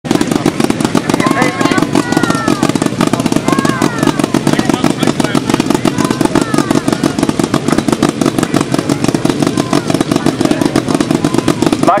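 Autocross car engine running loudly and steadily, with a fast, even pulse.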